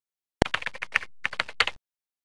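Computer keyboard typing: a quick run of keystrokes that starts with one sharp click, pauses briefly about a second in, and stops abruptly near the end.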